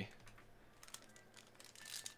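Faint light clicks and rustles of trading cards and a foil card pack being handled and started open, a few ticks about a second in and again near the end.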